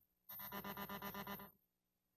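A brief electronic tone sequence, pulsing rapidly at about eight pulses a second for just over a second, then cutting off.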